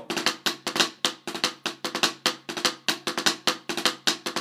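Drumsticks playing the single drag rudiment on a practice pad: a steady run of quick strokes with drag grace notes, the louder strokes falling about twice a second. It is played with a straight, even feel rather than the lilted feel the drag should have.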